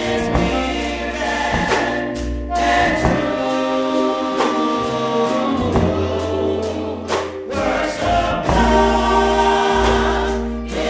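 Four-woman gospel vocal group singing in close harmony, holding long chords, over electric keyboard accompaniment with deep sustained bass notes.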